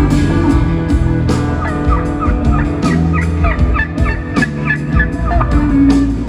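Live band music with imitation turkey gobbling on top: a long run of quick, warbling, yelping calls from about a second and a half in until near the end.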